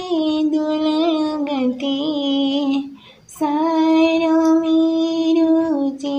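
A man singing a Santali song in a high voice, with no instruments showing. He holds two long phrases and breaks briefly for breath about three seconds in.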